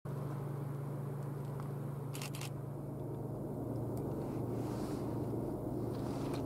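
Low rumble of an approaching freight train's diesel locomotives, still out of sight, slowly growing louder. A couple of brief clicks come about two seconds in.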